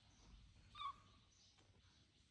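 A baby macaque gives one short, high squeak a little under a second in, against near-silent room tone.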